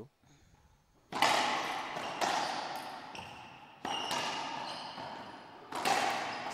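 Racquetball serve and rally: about five sharp cracks of the ball off racquets and walls, each ringing on in the enclosed court, the first and loudest about a second in. A brief shoe squeak on the hardwood floor comes in the middle.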